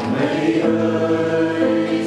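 Mixed choir of men's and women's voices singing a hymn in parts, holding sustained chords that change about every second.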